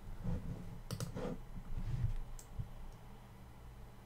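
A few keystrokes on a computer keyboard, clicking at irregular intervals over a low steady room hum.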